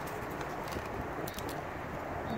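Steady low hum of freeway traffic in the background, with a few faint clicks from handling a pocket knife.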